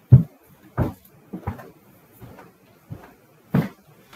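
Irregular knocks and bumps, about seven in four seconds, the loudest near the start and another heavy one near the end, like something being handled close to a microphone; no violin notes are heard.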